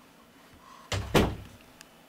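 Lid of a storage chair being shut: two knocks close together about a second in, the second one louder, with a dull thud.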